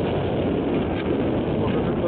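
Steady rumble of a moving vehicle, with wind on the microphone.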